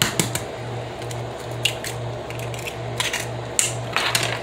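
An egg cracked against the rim of a plastic measuring cup and the shell pulled apart: a few sharp clicks and taps, over a low hum that pulses evenly.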